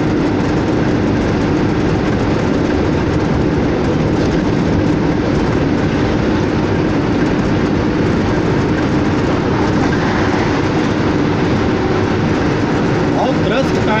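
Steady engine drone and road noise inside a truck cab cruising at constant highway speed, with an unchanging low hum.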